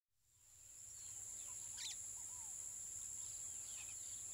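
Faint nature ambience fading in: insects trilling steadily in a high pitch, with a few short bird chirps and calls about halfway through.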